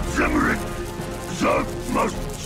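Animated action soundtrack: a voice makes two short strained sounds, one just after the start and one near the end, over steady background music and mechanical sound effects.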